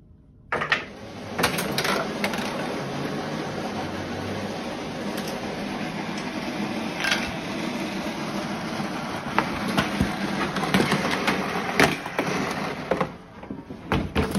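A home-made chain-reaction machine of toys, boxes and books running: a steady mechanical whirring rattle starts suddenly about half a second in. Several sharp knocks and clatters of objects falling and striking break through it, the loudest near the end.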